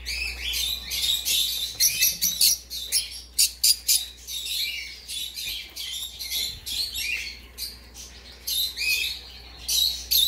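Many caged pet birds chirping and calling in quick, overlapping bursts. The calls are loudest and most crowded in the first few seconds, then thin out a little.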